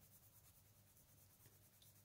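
Near silence, with faint scratching of a soft Nevskaya Palitra Master Class coloured pencil being rubbed onto sketchbook paper to lay down a colour swatch.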